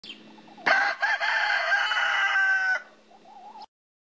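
A rooster crowing: one long, loud crow of about two seconds, with a brief catch near its start. Fainter wavering calls come just before and after it, and the sound cuts off abruptly near the end.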